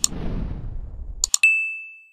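Subscribe-button animation sound effect: a low rushing swoosh broken by a click, two quick mouse-style clicks about a second and a quarter in, then a single notification-bell ding that rings out and fades.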